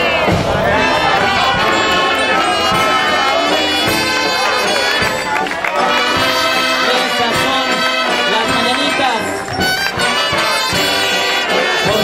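A municipal brass band with trumpets playing a tune, continuously and loudly, with crowd voices mixed in.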